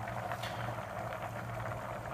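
Steady hiss and low hum of stove-top cooking on a gas burner, with faint bubbling from a pot heating, and one faint tick about half a second in.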